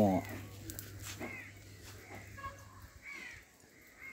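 A crow cawing a few times, short separate calls about two seconds apart.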